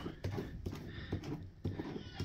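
A few faint, irregular plastic knocks and clicks from a hand handling the freshly fitted plastic wheel of a Little Tikes 2-in-1 Pirate Ship ride-on toy.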